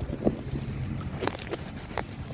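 Wind buffeting the microphone over a low steady rumble, with a few short knocks from the phone being handled.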